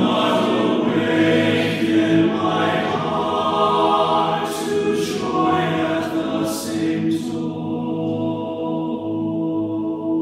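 Men's chorus singing a cappella in four-part TTBB harmony, with crisp 's' consonants sung together through the middle, settling into a long held chord in the last couple of seconds. The voices sound in a large, resonant church.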